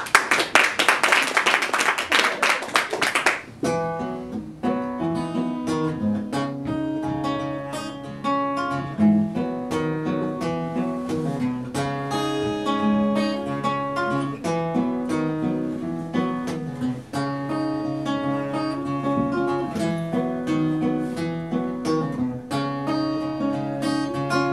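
Applause for the first three or four seconds, then an acoustic guitar picking a steady instrumental introduction, single notes and chords ringing out.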